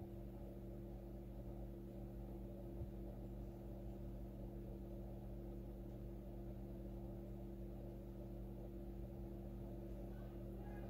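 Faint steady electrical hum of several low tones over a quiet background hiss, with one small tap about three seconds in.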